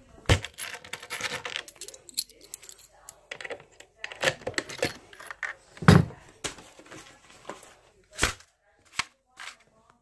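Handling noise: rustling with scattered clicks and knocks, and one heavy thump about six seconds in.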